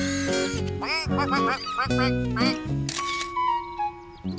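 Bright cartoon background music with a run of short quacking calls from ducks, then a camera shutter clicking once about three seconds in as the photo is taken.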